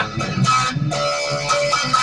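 Electric guitar played between sung lines of a song, separate notes and chords ringing on.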